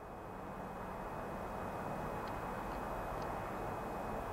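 Quiet, steady background hiss picked up by an unattended camcorder at night, fading in at the start, with a faint steady high whine and a few faint ticks near the middle.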